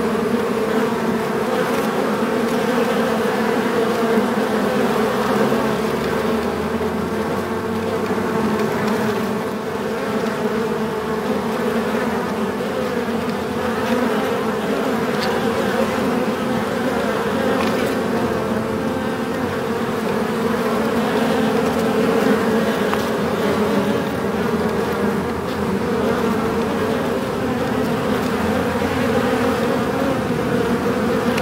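Many bees buzzing together in a beehive: a steady, dense hum of many overlapping tones.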